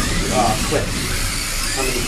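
Kyosho Mini-Z 1:28-scale electric RC cars with 70-turn motors racing round a tabletop track, their small electric motors giving a steady high whine. People are talking faintly behind it.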